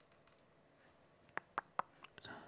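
Quiet room tone with faint high-pitched chirps in the background, and three short, sharp clicks in quick succession near the end.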